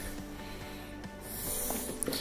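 A plastic jug of floor primer shaken by hand, the liquid sloshing faintly, under soft background music.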